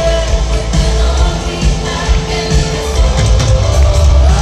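Live Christian band music with a male lead vocalist singing over a heavy, steady bass, heard from within the audience.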